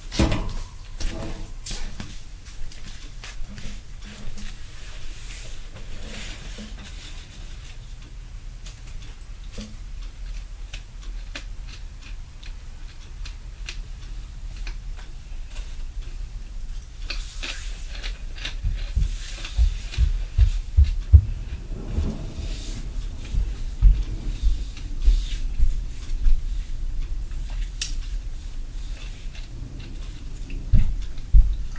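Dull low thumps through a floor or ceiling: a sharp knock at the start, then a run of thumps, several a second at times, through the latter part. The recorder takes such thumping for a neighbour stomping and dropping things overhead.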